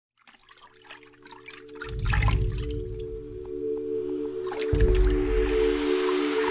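Intro music: a held synth chord fades in from near silence, with a deep bass boom about two seconds in and another near the end. Water splashing and dripping effects play over it.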